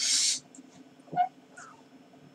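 A short, breathy exhale right after speaking, then a brief faint pitched sound about a second later.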